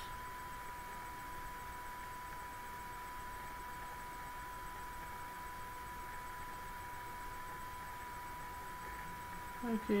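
Quiet room tone: a steady low hiss with a thin, constant high-pitched whine running underneath.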